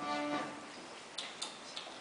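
A single held note from a musical instrument, lasting about half a second, followed by a few light clicks.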